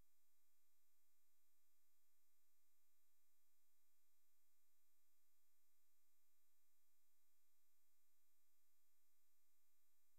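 Near silence: the audio track is all but empty, with only a very faint steady electronic tone under it.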